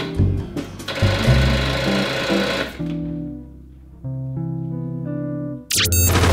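Riding mower's starter chattering rapidly for about two seconds as the ignition key is turned, the engine failing to crank over: the sign of a flat battery. Background music plays under it, and a tune of steady notes starts near the end.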